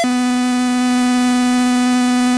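Eurorack modular synth: a Mutable Instruments Sheep wavetable oscillator in a feedback loop through a Vert mixer with Switches expander, holding a single steady, buzzy tone over a layer of hiss.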